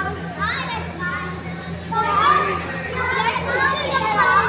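Children's voices chattering and calling over one another, with no clear words, over a steady low hum.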